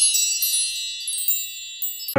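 A shimmering chime sound effect: many high, bright tinkling tones that ring on and fade away, with a few fresh tinkles along the way.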